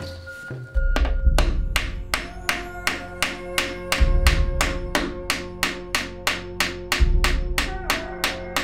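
Hammer blows flattening the protruding tips of nails driven through a plywood shield, bending them over like a poor man's rivet to fasten the handle. A long, even run of sharp strikes, about two or three a second, starts about a second in and stops just before the end. Background music plays throughout.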